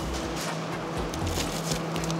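Steady low hum with a few faint short knocks and rattles.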